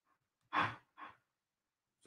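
A man's breathing between sentences: a short sigh-like exhale about half a second in, then a briefer second breath about a second in.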